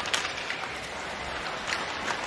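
Ice hockey arena ambience from a game broadcast: a steady crowd noise with a couple of faint knocks, one near the start and one near the end.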